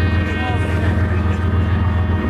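Boat engines running under way, a loud steady low drone with steady higher tones above it.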